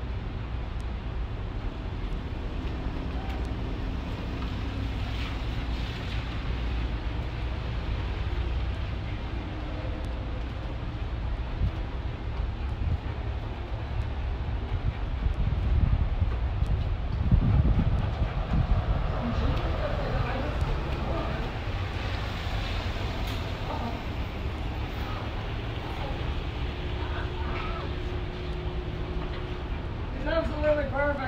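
Wind rumbling on the microphone over outdoor traffic noise, swelling to its loudest a little past the middle.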